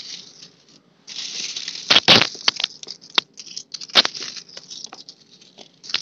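Indonesian 500-rupiah coins being handled, with a rustle of metal sliding on metal and several sharp clinks, the loudest about two seconds in.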